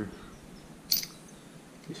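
A single short, sharp click about a second in from the metal M1A/M14 combination tool being handled.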